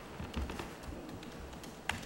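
Faint scattered clicks and taps of laptop keys and hands on a table, with one sharper click near the end, over low room tone.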